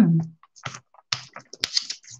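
Brayer rolling through thick wet acrylic paint on a gelli plate, making an irregular tacky crackle of small sticky clicks.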